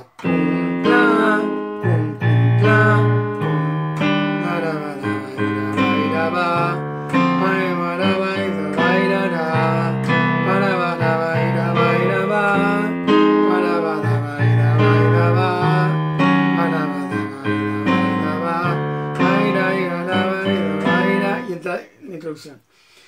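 Yamaha digital piano played with both hands in a steady rhythmic accompaniment: a single bass note at a time in the left hand under two-note chords in the right.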